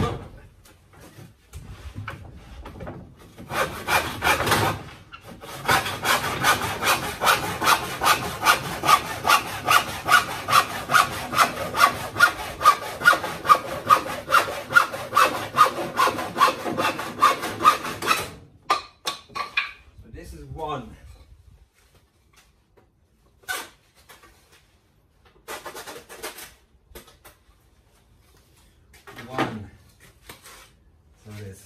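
Hand saw cutting through a timber board in quick back-and-forth strokes, about three a second, starting a few seconds in and stopping after roughly fourteen seconds. A few knocks and handling sounds follow.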